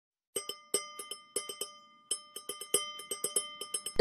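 A small metal bell struck about twenty times in a quick, irregular rhythm, each strike ringing on with the same clear pitch, as an opening jingle.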